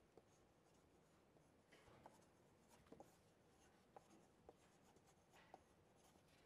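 Near silence, with faint, scattered scratches and taps of someone writing by hand.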